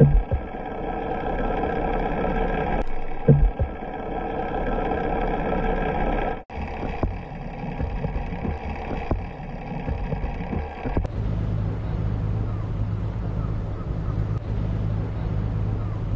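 A boat's engine running with a steady hum, with two low thumps about three seconds apart early on. About eleven seconds in, the sound changes to a lower, steadier engine drone.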